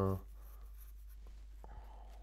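Quiet room tone with a steady low electrical hum, following the tail of a drawn-out spoken 'uh' at the very start. Two faint short clicks come a little past the middle.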